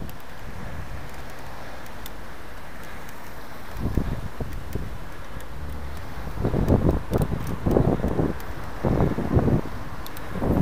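Wind buffeting a cycling camera's microphone over a steady low road rumble; the gusts pick up about four seconds in and again from about six and a half seconds on.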